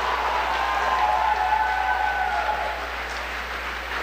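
Audience applauding, with some cheering voices over the clapping; it eases off slightly near the end.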